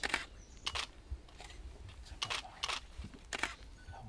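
Dry bamboo leaf litter crunching and rustling under boots in about six short, crisp bursts as a person shifts and crouches on it.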